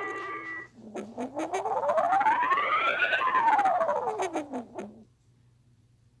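The held notes of a logo jingle die away. Then a single long wailing tone, altered by an audio effect, slides steadily up in pitch for about two seconds and back down for about two, crackling with clicks. It stops about a second before the end.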